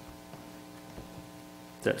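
Steady electrical mains hum from the sound system, several fixed tones, with a man's voice starting a word just before the end.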